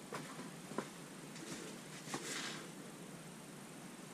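Faint scattered clicks and a brief soft rustle: low-level handling noise in a small room.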